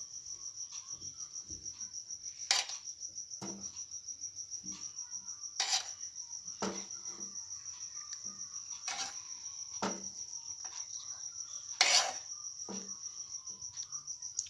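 A cricket trills steadily throughout in a high, rapidly pulsing tone. A metal spoon clinks and scrapes against a pan about four times as hot jaggery syrup is ladled onto popcorn, with lighter taps in between.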